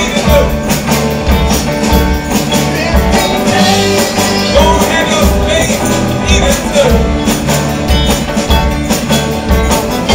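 A live rock band playing with a steady beat: drum kit, electric bass, electric guitar and banjo, with a percussionist on congas.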